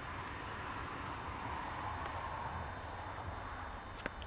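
Steady outdoor background noise, with no distinct event.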